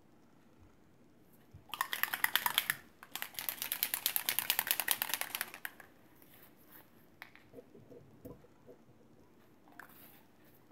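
Small dauber-topped bottle of Distress Stain shaken hard in two bursts, a fast rattling clatter, the second burst longer than the first. A few faint taps follow.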